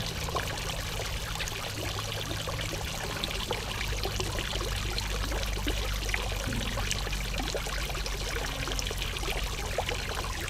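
Water trickling and splashing steadily in a garden fish pond's water feature, kept flowing by a pond pump.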